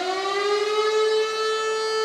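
Civil-defence siren wailing: its pitch rises over about the first second as it winds up, then holds one steady tone. It is the siren sounded at 'W' hour to commemorate the outbreak of the Warsaw Uprising.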